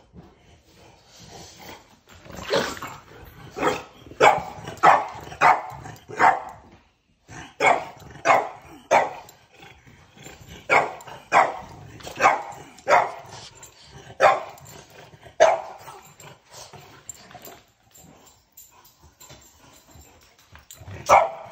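French bulldog barking over and over in short, sharp barks, in clusters of two to four, starting about two seconds in, with a brief break near seven seconds.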